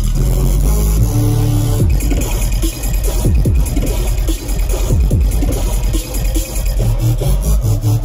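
Loud electronic bass music played live over a festival stage's sound system, with deep sub-bass and repeated falling bass sweeps every second or two.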